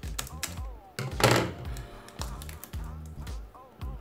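Scissors snipping through thick adhesive tape, a few sharp cuts and clicks, the loudest about a second in.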